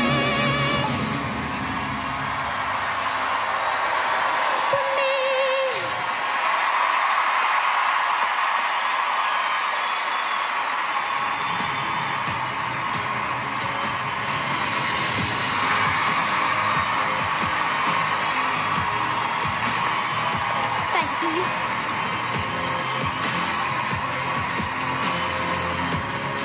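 A girl's final held sung note, with vibrato, ends about a second in; a large audience then applauds and cheers loudly, with whoops, over music.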